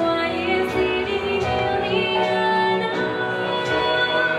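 Live pop ballad: a female vocalist singing into a microphone in held notes with vibrato, accompanied by a small band with electric bass guitar and keyboard.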